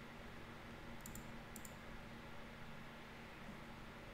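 A few faint computer mouse clicks, two close together about a second in and another about half a second later, over a low steady hum from the microphone.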